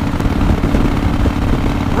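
2005 Harley-Davidson CVO Fat Boy's air-cooled V-twin running steadily at highway cruising speed: a constant low rumble with a steady drone.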